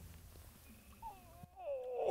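A faint low rumble, then about a second in a man's drawn-out, falling 'ooh' of excitement.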